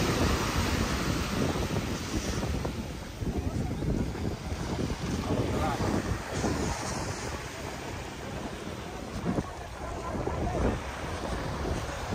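Small waves washing onto a sandy beach, with wind buffeting the microphone in uneven gusts.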